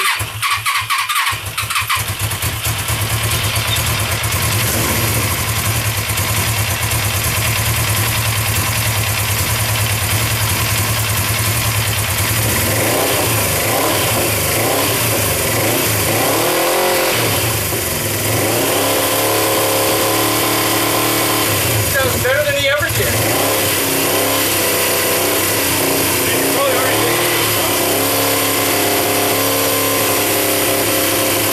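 Suzuki GS500 air-cooled parallel-twin engine, freshly assembled from parts of four engines, being started for the first time. A loud, steady mechanical sound comes on suddenly and runs on, with voices faintly beneath it.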